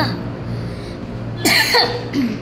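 A person coughs once, a short loud burst about one and a half seconds in.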